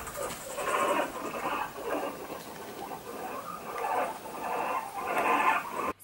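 Guinea pig teeth chattering, a grinding clatter of the teeth in uneven bursts: a dominance signal used to establish hierarchy between guinea pigs.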